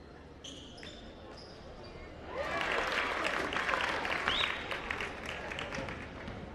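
Basketball game sounds on a hardwood gym floor: sneakers squeaking in short chirps as players go for the rebound, then from a little over two seconds in a loud rise of crowd shouting and cheering over the bouncing of a dribbled ball.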